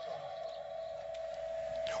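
A single steady tone held at one mid pitch, growing slightly louder toward the end.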